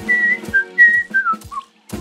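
A cartoon character whistling a short tune of clear single notes that step down in pitch, stopping about one and a half seconds in.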